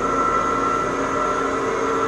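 Electric whole-body cryotherapy chamber running with a steady hum and a constant high tone over it.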